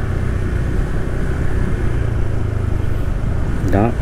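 Steady low rumble of wind on the microphone and road noise from a moving motorbike. A voice begins near the end.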